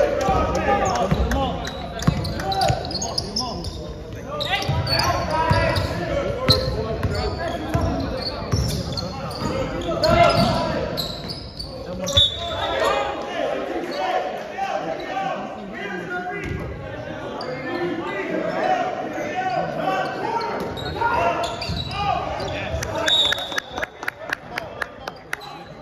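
Basketball dribbled on a hardwood gym floor, its bounces sounding amid indistinct voices of players and onlookers, in a large gym hall.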